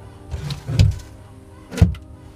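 Knocks and cracks from chiselling and prying a rotten wooden backing board out of a fibreglass sailboat's transom, a few sudden strokes with the loudest near the end, over background music.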